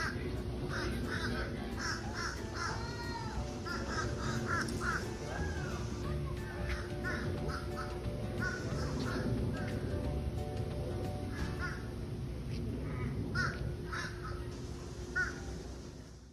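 Birds calling in a string of short, cawing calls, some overlapping, thinning out in the second half.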